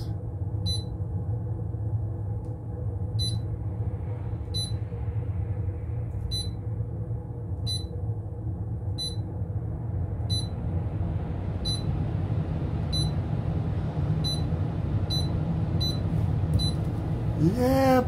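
Skutt GlassMaster kiln controller keypad beeping as keys are pressed to enter a firing schedule: about fourteen short, high beeps at uneven spacing, coming faster near the end, over a steady low hum.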